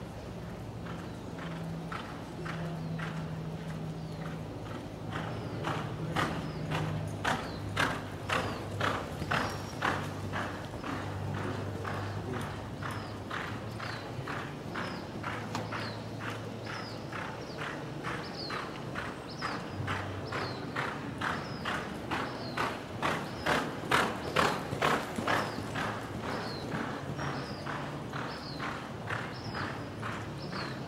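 A horse's hoofbeats as it lopes on soft arena dirt: a steady, even beat of about two footfalls a second. The beats grow louder a few seconds in and again a little past the middle, as the horse comes nearer, then fade.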